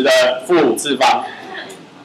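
A man's voice talking in short phrases that trail off and fade about a second in.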